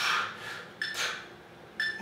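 Workout interval timer counting down the last seconds of a work interval: three short electronic beeps about a second apart, each followed by a brief softer, noisier sound.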